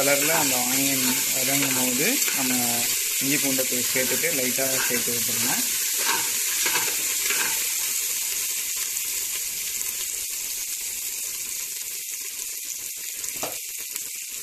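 Sliced onions and ginger frying in oil in an aluminium pressure cooker, a steady high sizzle as they brown. A few short clicks of a steel spatula come near the end.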